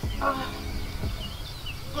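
A woman's short exclaimed "oh", then quiet outdoor background with a low steady hum and a few faint bird chirps.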